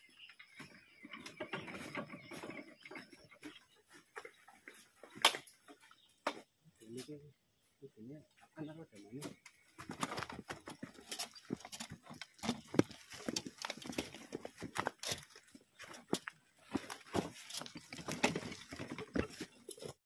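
Irregular knocks and rattles of plastic harvest crates and a hand trolley being moved and handled, with scattered footsteps.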